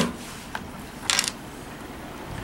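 The hinged, sealed port cover of a waterproof battery bank being pried open by hand. There is a sharp click as it starts, a faint tick about half a second in, and a short scrape a little over a second in as the flap comes free.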